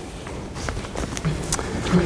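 Footsteps on a hard floor over steady room noise, with two short low murmurs of voice, one about halfway through and one near the end.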